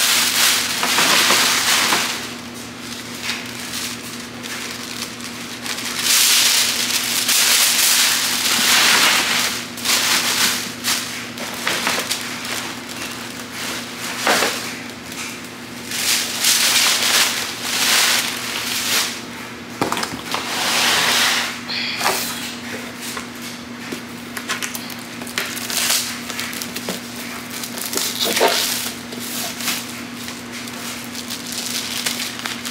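Tissue paper crinkling and rustling in repeated bursts as it is handled and stuffed into gift bags, over a steady low hum.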